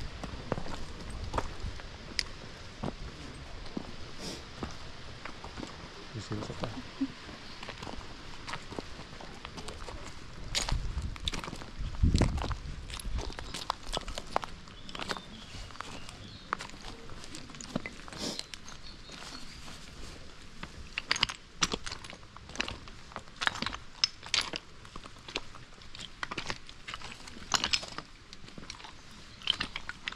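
Footsteps on a path of loose stones: irregular crunches and clicks, coming thicker in the second half, over a steady hiss. About twelve seconds in there is a brief low rumble, the loudest moment.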